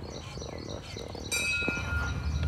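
A single bright metallic strike a little past halfway, ringing on like a bell with several clear steady tones, followed by a short knock.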